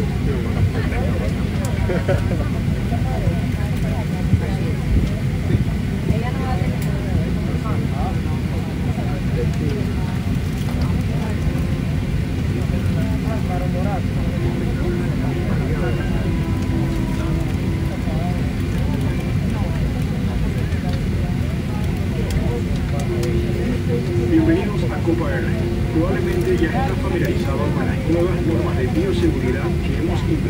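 Steady low cabin rumble inside a Boeing 737-800 during pushback from the gate, with passengers talking faintly. A steady hum joins about halfway through.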